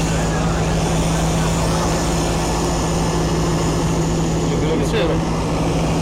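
Fire engine running steadily, a constant low hum over broad noise, with indistinct voices around it.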